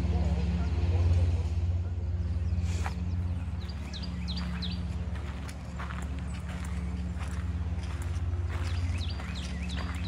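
Songbirds chirping in clusters of short descending notes, with footsteps on a sandy path, over a steady low rumble.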